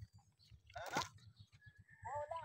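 Faint biting and chewing on a crisp wafer biscuit, with one short squeaky voice-like sound about a second in.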